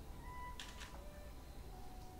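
Faint, sparse held tones in a very quiet passage of live acoustic music, with a short breathy hiss a little over half a second in.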